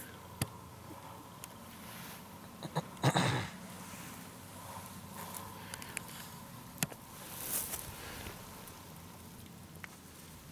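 Handling noise from a hand-held camera: scattered clicks and the rustle of clothing against the microphone, loudest in a short rush about three seconds in.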